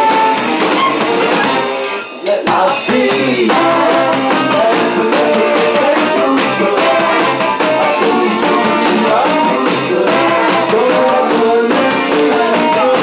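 Live band with saxophones, sousaphone and drum kit playing a loud, up-tempo number, with a brief break in the music about two seconds in before the band comes back in.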